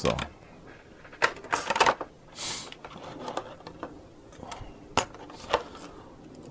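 Thin clear plastic blister tray crackling and clicking as small metal model-car wheel arches are worked out of it. Scattered sharp clicks and short rustles, with a longer rustle about two and a half seconds in and the loudest click about five seconds in.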